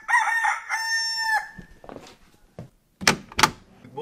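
A rooster crowing once, a long, fairly level call that ends about a second and a half in. Two sharp knocks follow near the end.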